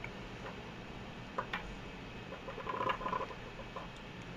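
A few faint clicks and taps of small airsoft parts, a brass inner barrel and a plastic hop-up chamber unit, being handled on a tabletop. Two light clicks come about one and a half seconds in, then a short cluster of small ticks near three seconds.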